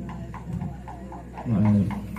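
A pause in a man's speech over a microphone, with faint short calls repeating about four times a second in the background. About a second and a half in comes a brief, steady pitched vocal sound from the man.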